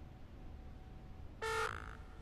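A single short electronic beep about one and a half seconds in, fading quickly, over a faint steady hiss.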